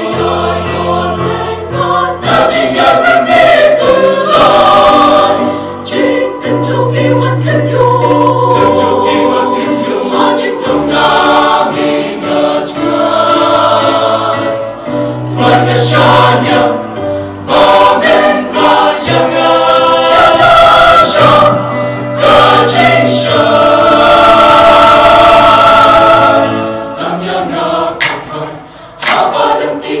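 Large mixed choir of men's and women's voices singing a gospel hymn in parts, loud and sustained, with a brief drop in volume near the end.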